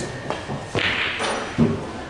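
A pool shot on a pool table: a sharp click of the cue striking the cue ball, then clacks of balls colliding and thuds of balls striking the cushions. The loudest is a low thud about one and a half seconds in.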